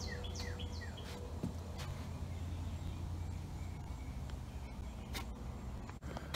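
A songbird singing a quick run of downward-slurred chirps, about three a second, that stops about a second in, over a steady low outdoor rumble. A few faint clicks follow near the end.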